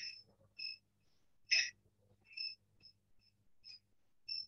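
Short high-pitched chirps from a small animal, about seven at uneven gaps, over a faint steady low hum.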